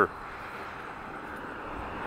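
Steady low rush of a distant passing vehicle, slowly getting louder toward the end.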